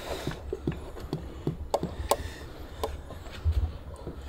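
Engine oil being poured from a large plastic jug into the bus engine's filler, heard as irregular short glugs and clicks, a few a second, over a low steady hum.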